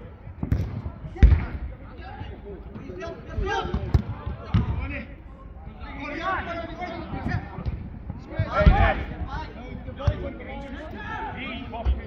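A football being kicked around a five-a-side pitch: dull thuds every few seconds, the loudest about a second in and again near nine seconds. Players shout and call indistinctly throughout.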